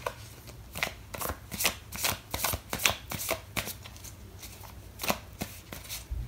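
A deck of tarot cards being shuffled by hand: a run of short, irregular riffles and taps, a few each second.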